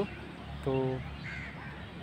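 A crow cawing once, faint and short, about a second and a half in.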